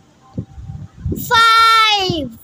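A child's high voice calling out the number "five" as one long, sing-song note, held steady and then falling in pitch at the end. Fainter speech comes before it.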